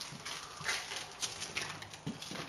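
Footsteps of a person walking through a house, a few uneven steps about two a second, with some rustling.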